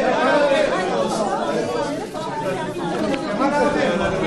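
Many people talking at once in a room: the overlapping chatter of a crowd of reporters.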